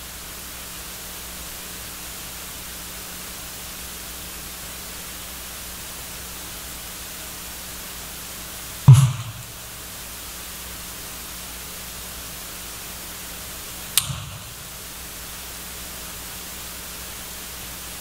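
Steady hiss of the microphone and sound system with a faint low hum, broken by a short thump about nine seconds in and a sharp click about fourteen seconds in.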